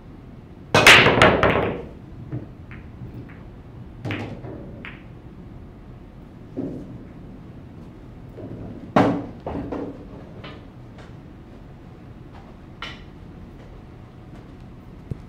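Pool break shot: the cue ball smashes into the racked balls about a second in, giving a second-long burst of ball-on-ball clacks. Single clacks of balls striking each other and the cushions follow every few seconds as the spread balls roll out.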